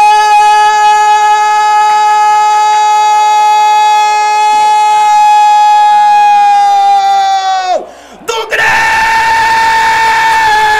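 A male football commentator's long drawn-out goal cry ("Gooool!"), one note held for about eight seconds that sags in pitch as his breath runs out; after a quick breath he starts a second held cry near the end.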